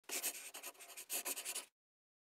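Two quick bursts of dry scratching, made of many small rapid strokes, that stop abruptly just before the two-second mark.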